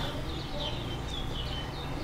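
Faint bird chirping, a run of short high calls, over a low steady background hum.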